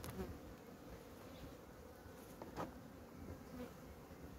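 Honeybees of a wintering colony buzzing faintly and steadily in an opened hive. A couple of light clicks come from handling the hive, about a fifth of a second in and again about two and a half seconds in.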